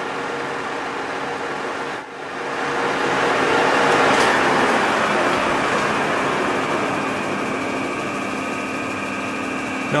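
Colchester Master lathe running while a 1.5 mm insert cuts a thread run-out groove in a turned shaft, at first played back at double speed. After a short break about two seconds in, the machine noise swells louder and then slowly eases off.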